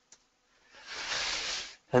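After a near-silent pause, a male lecturer draws a breath lasting about a second, an even hiss starting just under a second in. His speech resumes right after it.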